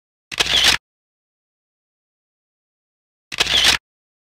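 Two identical short clicks laid in as an edit sound effect, each about half a second long, three seconds apart, in otherwise dead silence.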